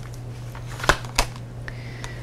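Tarot cards being handled and shuffled in the hands, with two sharp card snaps about a second in and a fainter tap shortly after.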